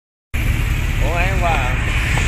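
Porsche 911's flat-six engine idling with a steady low rumble, which cuts in abruptly just after the start.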